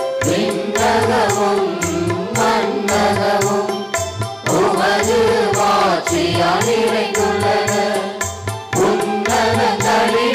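Voices singing a Tamil church hymn with instrumental accompaniment and a steady low drum beat, the melody rising and falling in long held phrases.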